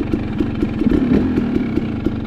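KTM 300 XC-W TPI single-cylinder two-stroke dirt-bike engine running steadily, with no clear rise or fall in revs.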